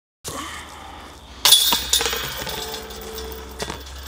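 A disc golf putt hitting the basket's chains about a second and a half in: a sudden metallic jingle of chains that fades over a couple of seconds.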